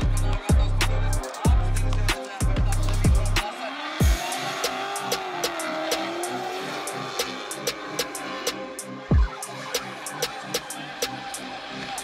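Electronic background music with a heavy, pulsing bass and a fast beat. The deep bass drops out about three and a half seconds in, leaving a lighter beat with a wavering synth line.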